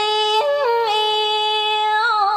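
A singer holding a long, steady sung note that steps down in pitch three times before settling, over a karaoke backing track.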